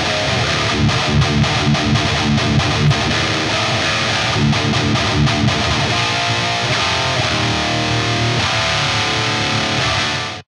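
Distorted electric guitar playing a fast, tightly picked metal riff, with short repeated chugging strokes in the first few seconds, running without a break.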